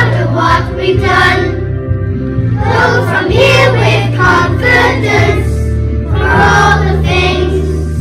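A group of young children singing a song together in unison, in phrases with short breaks, over a steady backing accompaniment.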